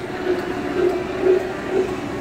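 Electric store mobility scooter running, with a steady mid-pitched tone that pulses about twice a second.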